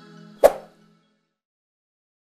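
The last notes of background music fading out, then a single short pop about half a second in: an on-screen subscribe-button click sound effect.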